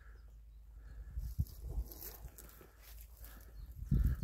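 Faint outdoor ambience: low wind rumble on the microphone with soft footsteps and rustling through a stand of oilseed rape, and a faint short call about two seconds in.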